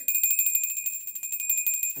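Small handheld bell shaken rapidly and continuously, a bright, high ringing with quick repeated strikes, rung to summon someone.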